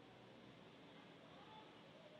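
Near silence: room tone with a faint steady hiss, and a faint short tone about halfway through.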